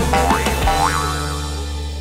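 Channel intro jingle: bright music with two quick upward-sweeping cartoon sound effects in the first second, then a held chord slowly fading.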